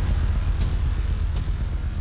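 A steady low rumble, with a few faint ticks over it.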